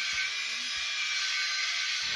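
Handheld electric shaver buzzing steadily against the cheek.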